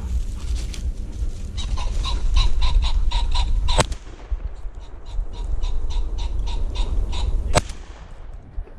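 A flushed rooster pheasant cackling in a rapid run of short calls while a shotgun fires twice, the shots about four seconds apart.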